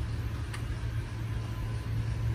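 Steady low background rumble, with a faint click about half a second in.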